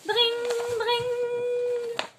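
A woman's voice imitating a ringing telephone, a long note held on one steady high pitch.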